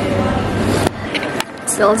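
Indoor background noise with a low hum. Two sharp clicks come about a second in and again half a second later, and a woman's voice starts near the end.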